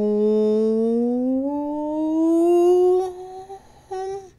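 A voice holding one long drawn-out sung note, rising slowly in pitch for about three and a half seconds, then a short second note just before the end.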